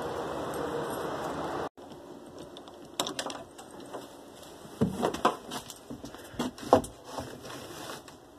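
A steady hiss that cuts off abruptly under two seconds in, then scattered light knocks and rustles of handling as the phone is moved and a hand takes hold of a loose piece of sheetrock.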